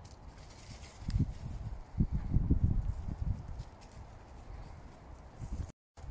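Footsteps on a forest floor: a run of soft, low thuds, heaviest about two to three seconds in.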